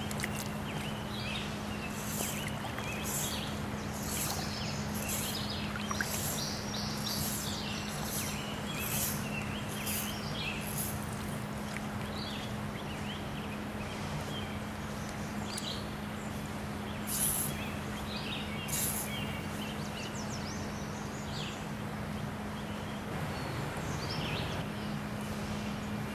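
Steady rush of stream water with a bird chirping, a short high note repeated about every two-thirds of a second for several seconds and then twice more later, over a faint steady low hum.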